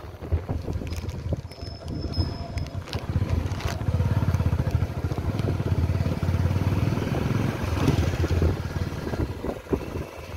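Engine of a moving two-wheeler running, with wind buffeting the microphone. It gets louder about four seconds in and eases off near the end.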